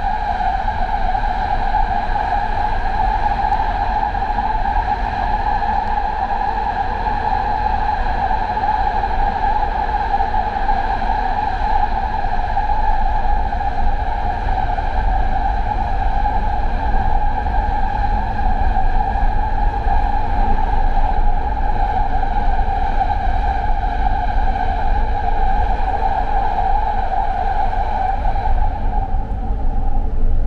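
Doha Metro train running at steady speed, heard from inside the front car: a steady high whine at one unchanging pitch over a low rumble of the wheels on the track. The whine fades near the end.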